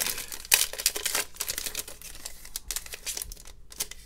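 Metallized plastic wrapper of a 2020-21 Panini Flux basketball card pack being torn open and crinkled by hand: a run of irregular crackles, loudest about half a second in and thinning out toward the end.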